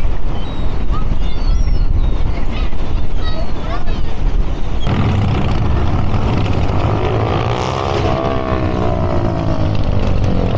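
Gulls calling in short cries over a heavy low rumble. About five seconds in, street traffic takes over, with a vehicle engine passing close by, its pitch rising and then falling as it goes past.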